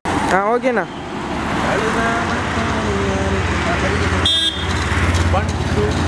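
Roadside traffic noise: a vehicle engine running steadily with scattered voices, a brief warbling sound just after the start, and a short horn toot about four seconds in.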